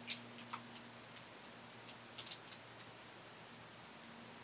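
A handful of light, sharp clicks and taps from a paintbrush against a watercolour palette, spread through the first two and a half seconds, over a faint steady low hum.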